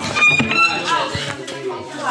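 People talking in a room, with a short high-pitched sound about a quarter second in and low knocks and rustling of the phone being handled.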